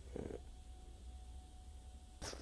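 A quiet, steady low hum with a faint thin steady tone above it, and a brief soft sound just after the start.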